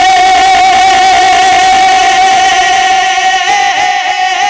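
A man singing a naat into a microphone, holding one long note, then breaking into wavering ornaments near the end.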